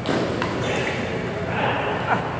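A table tennis ball clicking sharply off paddle and table: one hit at the start and another about half a second later, the last strokes of a rally.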